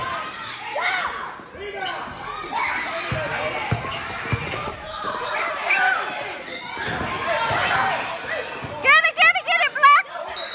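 Basketball being dribbled and bouncing on a gym floor in a large echoing hall, with players and spectators calling out. Near the end comes a loud burst of rapid, repeated squeaks from basketball shoes as players scramble on the floor for a loose ball.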